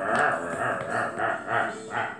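A man's voice imitating a dog for a dog hand puppet: a drawn-out vocal sound, then a quick run of short, bark-like yelps from about a second in.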